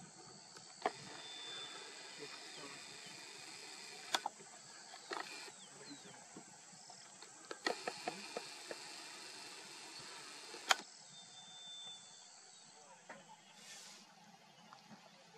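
Faint outdoor field ambience with a steady high hiss, two short high whistles, and scattered sharp clicks: a quick run of them about eight seconds in, and the loudest click a little before eleven seconds.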